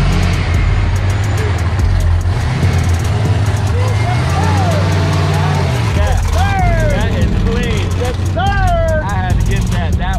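Cars driving slowly past one after another with a steady deep engine rumble. One engine's pitch rises and falls around the middle as it goes by. Spectators call out and shout over it in the second half.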